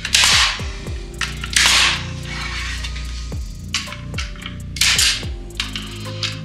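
Metabo HPT pneumatic metal connector nailer driving hanger nails through a steel joist hanger into wood: three sharp shots, each with a brief hiss of air. The first comes right at the start, the second about a second and a half in, and the third about five seconds in.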